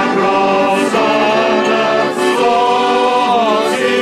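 A crowd singing a slow song together in long held notes, with an accordion accompanying.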